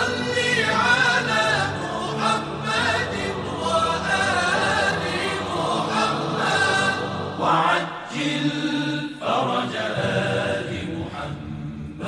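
Devotional choral chanting: several voices sing a melodic chant over steady held low tones.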